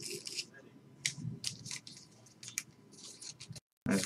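Trading cards being handled and slid against one another: a string of short, sharp swishes and scrapes.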